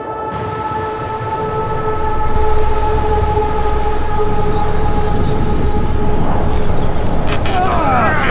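Strong blizzard wind blowing, building over the first two seconds into a loud, steady rush with a deep rumble. A steady held tone fades out around the middle, and a man starts shouting near the end.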